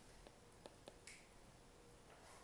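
Near silence with three faint clicks and a brief soft hiss about a second in, typical of a stylus tapping and stroking an iPad screen while handwriting, over a faint steady hum.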